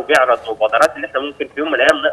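Speech only: a voice coming over a telephone line, thin and cut off at the top, with a few sharp clicks between syllables.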